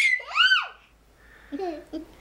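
A baby squealing twice in quick succession, very high-pitched, the second squeal rising and then falling. About a second and a half in comes a short, lower voice sound.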